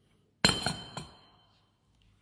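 A white ceramic mug set down on a hard tabletop: a sharp clink about half a second in, a second lighter knock about a second in, with a brief ringing after.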